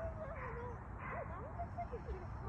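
Wind rumbling on the microphone, with short whining cries that slide up and down in pitch.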